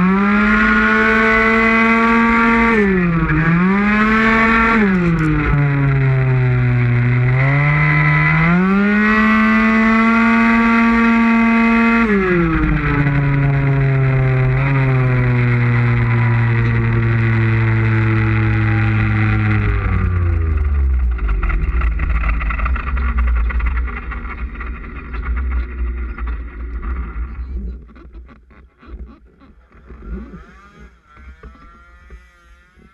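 Two-stroke 50cc engine of an MBK Mach G racing scooter with a Metrakit kit at high revs, its pitch dipping for corners and climbing again. About twelve seconds in the revs fall steadily as it slows, settling to a low idle about twenty seconds in, and the engine sound drops away near the end.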